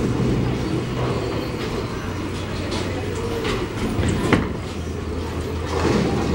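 Bowling alley sound: bowling balls rolling down the lanes with a steady low rumble, and a single sharp knock about four seconds in.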